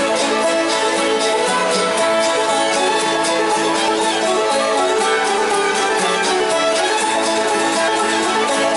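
Acoustic string band playing a fiddle tune: two fiddles bowing the melody over a banjo picking a steady rhythm, with no pause.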